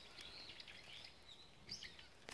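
Near silence, with faint, scattered bird chirps.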